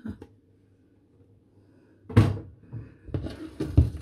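A single loud thump about halfway through, then from about three seconds in a wire whisk knocking and scraping against a stainless steel pot as tomato is stirred in.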